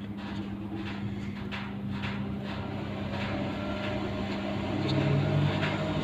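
Gusting storm wind with a steady low electrical hum underneath. About five seconds in, a gust builds: the sound gets louder and a second, lower hum comes in.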